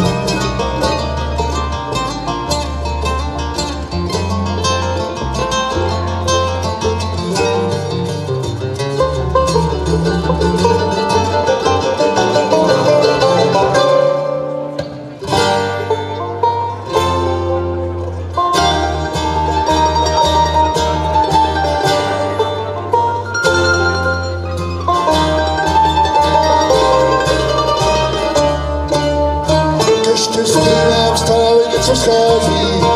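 Live acoustic bluegrass band playing an instrumental passage without singing: banjo picking over acoustic guitars and upright bass. The music dips briefly about halfway through, then carries on.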